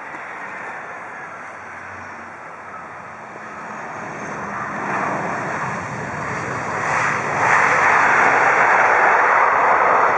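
Jet engines of an Airbus A319 on its landing rollout: a broad rushing engine noise that builds from about four seconds in and is loudest over the last few seconds.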